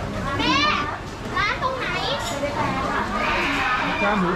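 People's voices with high-pitched, child-like calls that rise and fall several times, over steady crowd noise in a busy market aisle.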